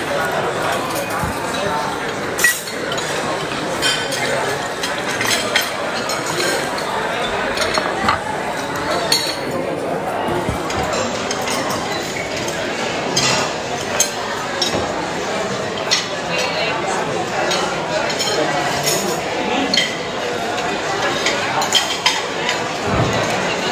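Busy restaurant dining room: a steady chatter of many diners' voices with frequent sharp clinks of cutlery, plates and glasses scattered throughout.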